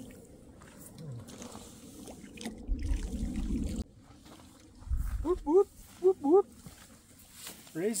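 A man's short wordless whoops, four quick rising calls about five to six and a half seconds in, after a low rumble a couple of seconds earlier.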